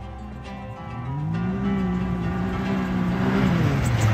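Can-Am Maverick X3 Turbo RR's turbocharged three-cylinder engine under throttle in sand: its note rises about a second in, holds steady for about two seconds, then falls away near the end.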